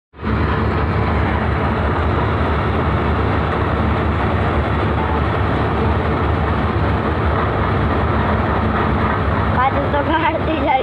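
Heavy farm machinery running steadily: a loud, continuous engine rumble with a dense mechanical clatter, as of a combine harvester working a wheat field.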